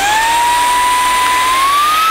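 Easine by Ilife M50 cordless handheld vacuum cleaner's motor running with a steady high whine just after switch-on, its pitch climbing a step about one and a half seconds in.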